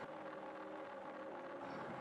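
Faint steady hum of room tone, with a few low held tones and no other events.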